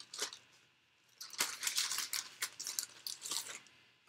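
Crinkling and rustling of plastic or paper packaging being handled by hand: a few light ticks, a short pause, then a run of irregular scratchy crackles from about a second in until near the end.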